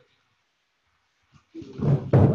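Near silence, then about a second and a half in, a loud man's voice close to the microphone, coarse and rough-sounding.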